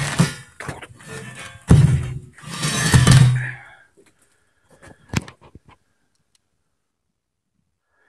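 Heavy steel pipe section (530 mm, thick-walled) being shifted and stood on a concrete floor. There is a loud thunk, then a longer scrape about a second later, and then a few faint knocks.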